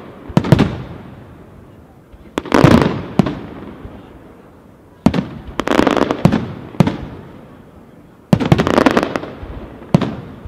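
Aerial firework shells bursting overhead in four volleys, one about every two and a half to three seconds. Each volley is a cluster of sharp booms followed by an echoing tail that dies away before the next.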